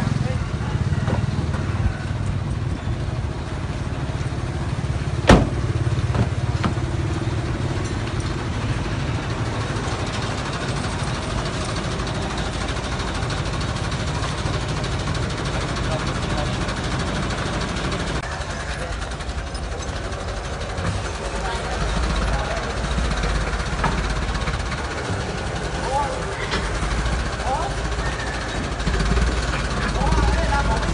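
An engine running steadily, a low rumble that drops deeper partway through, with people talking in the background and one sharp click about five seconds in.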